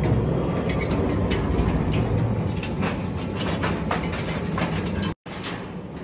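Industrial twin-shaft shredder running with its cutter shafts turning empty: a steady low mechanical rumble with scattered sharp clicks and knocks. The sound drops out briefly about five seconds in and comes back quieter.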